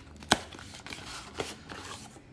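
Cardboard perfume box being slid apart by hand, its inner card sleeve scraping and rustling against the outer box, with a sharp click near the start and a lighter one a little past the middle.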